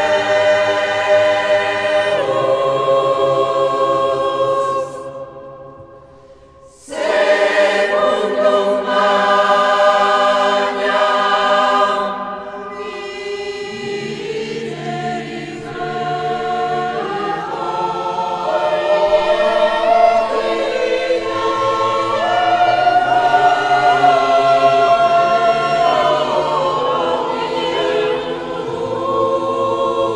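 Choir singing sustained chords in a large, reverberant church. About five seconds in the chord dies away into the room's echo, then the voices come back in about seven seconds in and carry on through shifting chords.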